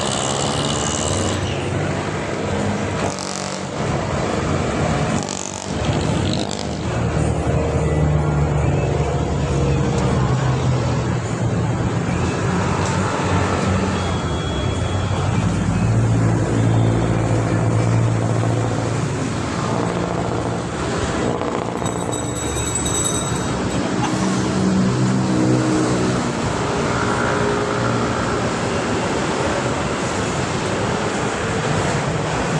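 Street traffic noise: a steady drone of running and passing motor vehicles, with a low engine hum. A brief high-pitched tone sounds about two-thirds of the way through.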